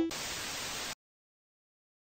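A burst of TV-static hiss, a noise sound effect lasting about a second that cuts off abruptly into silence.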